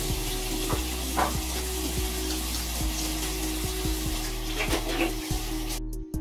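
Bathroom faucet running into the sink, with hands held under the stream for a quick rinse; the sound of the water cuts off suddenly near the end.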